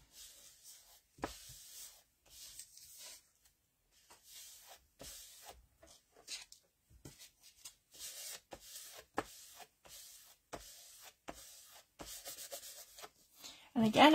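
Fingers and palm rubbing and pressing over paper, smoothing down a heat-dried gel-medium image transfer: a run of soft, uneven scratchy strokes.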